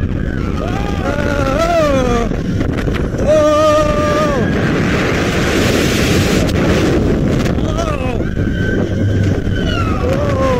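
Riders on a Mack Rides spinning steel roller coaster yelling and whooping, with one long held scream a few seconds in, over the steady rumble of the train on the track. A rush of wind rises through the middle seconds as the car picks up speed.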